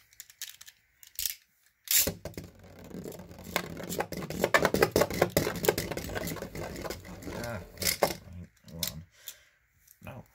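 Beyblade spinning tops launched into a plastic stadium. A sharp launch clack comes about two seconds in, then several seconds of rattling and clattering as the metal-and-plastic top spins and scrapes around the plastic bowl, with a hard knock near the end before it dies away. The round was a mislaunch.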